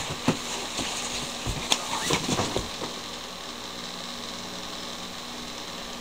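A few scattered knocks and rustles of a person moving about and settling back onto a couch in the first half, then only a steady background hum.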